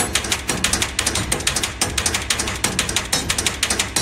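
A rapid, even run of sharp mechanical clicks, many a second, like a ratchet.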